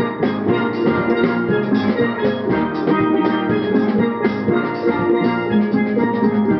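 Steel orchestra playing a tune together on steelpans of several sizes, the struck notes ringing over a quick, steady beat, with drums keeping time.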